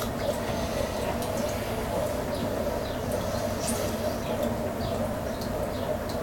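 Potter's wheel spinning with a steady hum, with faint, scattered wet squelches and clicks from hands working soft clay on it.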